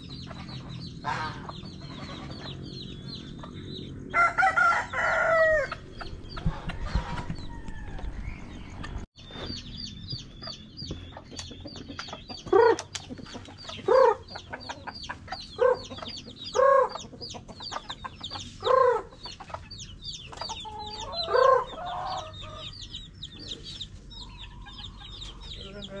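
Chickens: chicks cheeping with many short high peeps throughout, a rooster crowing once about four seconds in, and a series of short loud clucks in the second half.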